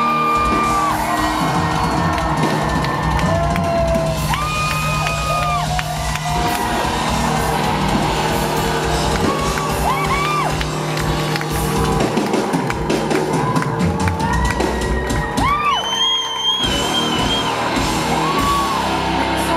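Live rock band playing loud, with a female lead singer and the crowd whooping and screaming over the music. The band drops out for a moment near the end, leaving a high rising scream.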